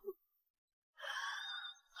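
A crying woman's breathy sigh about a second in, lasting under a second.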